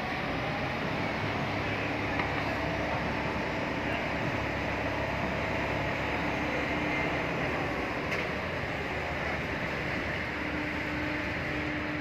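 Steady mechanical drone of a heavy-lift port gantry crane's machinery hoisting its spreader beam and slings, with a low hum that fades out and comes back.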